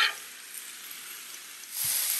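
Diced chicken and vegetables sizzling on a 36-inch Blackstone flat-top griddle, with a short sharp sound right at the start. The sizzle grows louder near the end.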